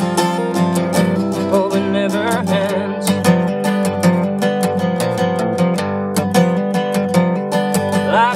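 Acoustic guitar with a capo, strummed in a steady rhythm with its chords ringing, as an instrumental passage without voice.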